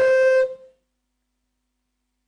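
A man's voice through a microphone holding one long, steady note on the drawn-out end of a spoken phrase, fading out about half a second in, followed by dead silence.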